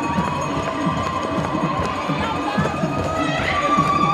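A traditional hand drum keeps up a steady beat while a group of dancers sings and chants. A long, high held note sounds over it at the start and comes back louder near the end.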